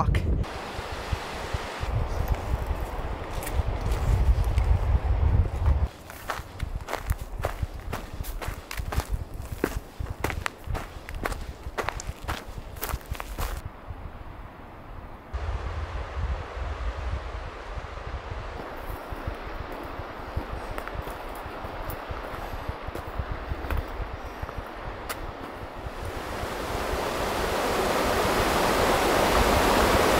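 Footsteps crunching on dry grass and twigs along a trail, with wind buffeting the microphone in gusts. Near the end, the rush of a creek in a rock canyon swells up steadily.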